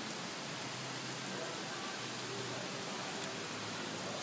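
Steady, even hiss of light rain falling.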